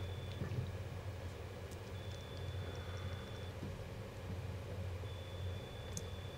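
Steady low rumble of a car's engine and tyres on a snowy road, heard from inside the cabin. A faint thin high tone comes and goes a couple of times.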